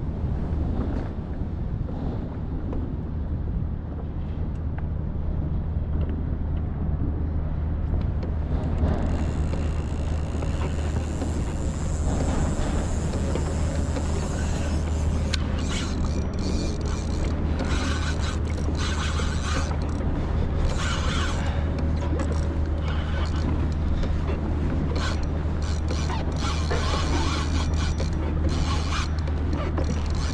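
Mechanical creaking and clicking over a steady low hum; the creaks and clicks get busier from about half way through.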